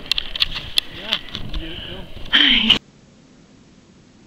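People's voices and laughter mixed with scattered sharp clicks and crackles. Near the end the sound cuts off suddenly to a faint steady hiss.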